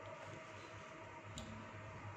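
Quiet room tone with a steady low hum and a single faint click about one and a half seconds in.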